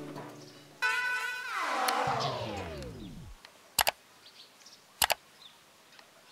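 Background music fading out, then an added sound effect: a pitched tone that holds and then slides down over about two seconds. Two sharp mouse-click sounds follow, each a quick double click, about a second apart, as the animated like and subscribe buttons are pressed.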